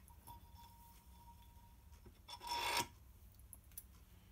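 A single short scrape, about half a second long and a little past halfway, as a small motorcycle indicator is pushed onto a drilled metal bracket in a vise. Faint ticks of the parts being handled come before it.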